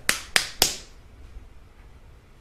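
Three sharp clicks in quick succession, about a quarter of a second apart.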